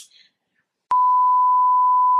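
A single steady electronic beep tone, a censor bleep edited into the soundtrack. It starts with a click about a second in and holds at one pitch.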